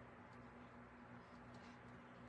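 Near silence: room tone with a steady low hum and a few faint scratches of a fine paintbrush stroking paint along the edge of a tray.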